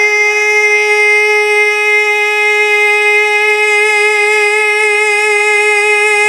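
A man singing naat, holding one long unbroken high note through a microphone and loudspeakers, steady in pitch.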